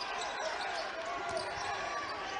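Court sound of live basketball play: a ball dribbled a few times on the hardwood floor, with faint distant voices in the gym.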